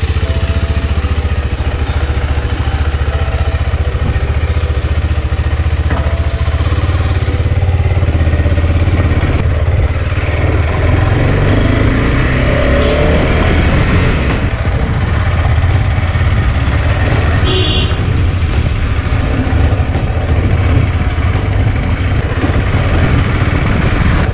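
KTM 390 Adventure's single-cylinder engine running steadily as the motorcycle is ridden slowly along a street.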